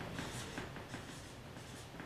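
Felt-tip marker writing on a paper flip-chart pad, a series of faint short scratching strokes.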